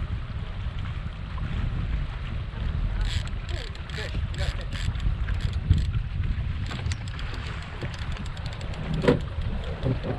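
Boat motor running at trolling speed: a steady low rumble with wind on the microphone. A run of sharp clicks comes in the middle few seconds, and there is a sharp knock near the end.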